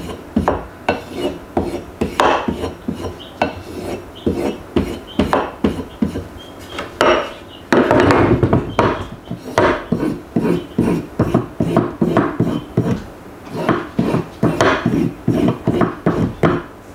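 Work Sharp Field Sharpener's leather strop stroked over a steel axe bit resting on a wooden board: short, quick strokes about two a second, each drawn away from the edge, with one longer, louder scrape about eight seconds in. This is the final stropping stage that hones the edge toward razor sharpness.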